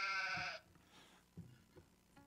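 A recording of a sheep bleating, played from a phone: one bleat that ends about half a second in.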